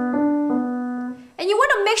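Grand piano played with both hands: the left hand plays the two-note B and D of a G chord under a simple right-hand melody from the G scale. Notes are struck at an even pace and ring out, then die away a little over a second in. A woman's voice begins near the end.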